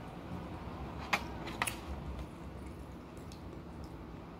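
Eating sounds from a person eating with her fingers: a few sharp clicks and smacks a little over a second in, and fainter ticks near the end.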